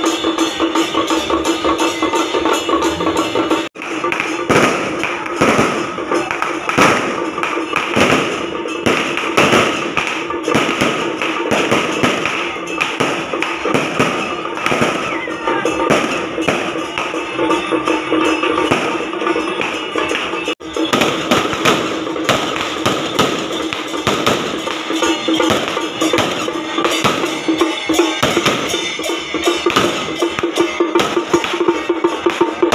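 Strings of firecrackers crackling in a fast, dense run of pops over loud procession music with drums and percussion.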